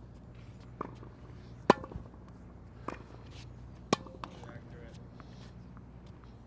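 Tennis balls struck with a racket on forehand volleys: a few sharp pops, two of them loud and a couple of seconds apart, with fainter knocks between them.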